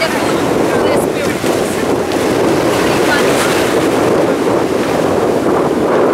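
Steady wind and small waves washing onto a sandy beach, with wind buffeting the microphone; faint voices in the background.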